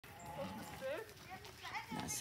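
Faint, indistinct voices in the background, mixed with sounds from a herd of pygmy goats.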